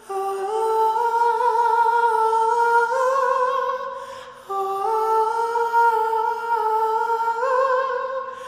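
A young male voice singing a wordless melody unaccompanied, close to the microphone. It holds long notes that step upward in pitch, in two phrases with a short breath break about four seconds in.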